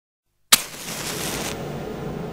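Silence, then a sudden loud bang about half a second in, followed by a hiss that holds for about a second and then drops to a quieter hiss.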